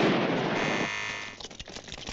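The tail of a firecracker explosion: a loud blast that hits just before, dying away in a noisy rumble over the first second. A high held tone sounds under it and cuts off about a second and a half in.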